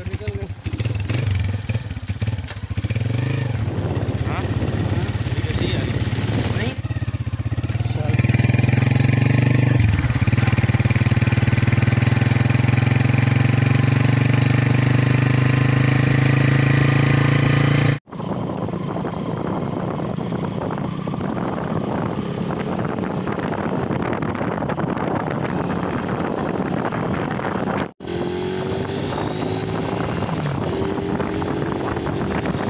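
Small motorcycle engine running steadily as the bike is ridden along a road, louder from about eight seconds in, with wind on the microphone. The sound breaks off abruptly twice.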